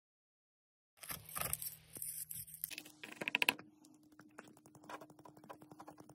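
Plastic zip-top bag crinkling and rustling as copper earring blanks are handled, loudest about three seconds in. After that comes a fast run of light ticks and taps over a faint steady hum.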